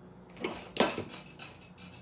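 A few brief clicks and rustles of small items being handled on a workbench, about half a second to a second in.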